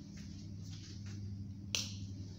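A single short, sharp click about three-quarters of the way through, over a steady low hum.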